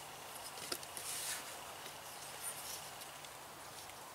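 Faint handling sounds of a wooden yardstick held against an old painted wooden window frame: a couple of light clicks and a brief rustle, over quiet outdoor background.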